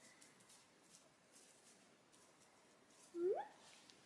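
Miniature poodle puppy giving one short whine that rises in pitch, about three seconds in, after a quiet stretch.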